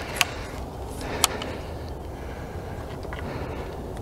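Two sharp clicks about a second apart, then a few faint ticks, over a steady low background rumble: the frame and handle of a fishing landing net being handled and fitted together.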